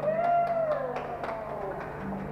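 The last chord of a steel-string acoustic guitar dies away as a voice holds one long note that rises briefly and then slowly falls. Short sharp clicks recur under it, echoing off the tiled walls.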